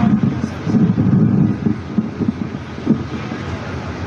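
Wind buffeting the microphone: an uneven low rumble, loudest in the first second and a half, then easing.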